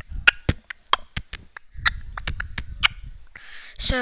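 A quick, irregular series of sharp clicks and taps, about a dozen over three seconds, mixed with low rumbling handling noise; near the end a breathy hiss leads into speech.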